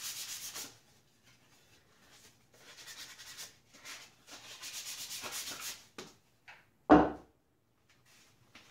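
Hand sanding a shellac-sealed wooden piece with 220-grit sandpaper: short bursts of quick back-and-forth rubbing strokes with pauses between. Near the end comes a single louder wooden thump as the piece is set down on the bench.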